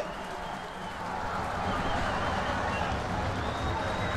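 Crowd at a football ground cheering and applauding a goal just scored: a steady noise of many voices and clapping that swells a little in the first couple of seconds.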